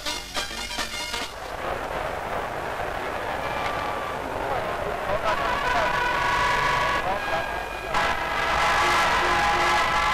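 Music for about a second, then a noisy din of many voices, a crowd at a boxing bout. Held notes sound over the din in the second half.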